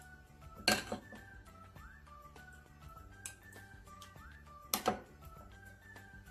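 Background music with a repeating melody. Two short, louder clatters cut through it, about a second in and near five seconds in: a metal spoon knocking against the glass baking dish as tomato sauce is spread over the lasagna noodles.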